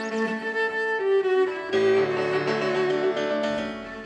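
A cello and a piano playing a classical-style duet. The cello holds long bowed notes over the piano, changes note about a second in, and starts a louder new phrase just under two seconds in.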